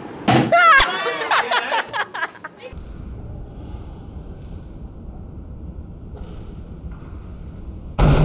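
Voices exclaiming and laughing in the first two and a half seconds, with a sharp click about a second in, then a steady low background rumble. Right at the very end the hydrogen-filled balloon ignites with a bang.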